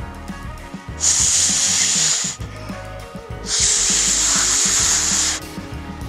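A large snack bag rustling as its contents are tipped out, in three long noisy bursts about a second in, in the middle and at the very end, over background music.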